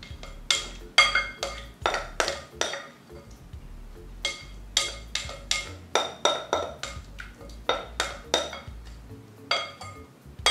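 A spoon clinking and tapping against a clear mixing bowl while scooping out a chicken casserole filling. The sharp, ringing clinks come in quick runs, with a pause about three seconds in and another shortly before the end.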